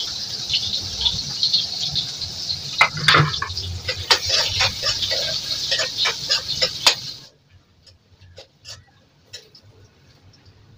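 Soybean and potato frying in hot oil in a kadhai: a steady sizzle, with the metal spatula scraping and clinking against the pan. The sizzle cuts off suddenly about seven seconds in, leaving only faint scrapes and clicks.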